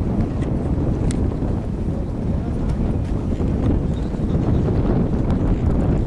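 Wind buffeting the camera microphone outdoors: a steady, loud, low rumbling rush with no breaks.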